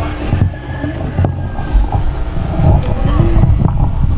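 A loud, uneven low rumble with indistinct voices over it.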